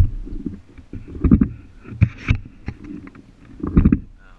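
A baby swing in motion, heard through a camera mounted on it: rumbling and knocking in bursts that come back with each swing, about every one to one and a half seconds.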